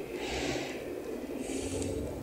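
A person breathing through the nose: two short airy breaths, the second higher and hissier, over quiet room tone.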